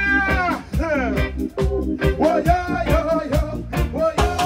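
Live reggae band playing with a regular beat; a long held note ends in a downward slide about a second in, then the groove carries on.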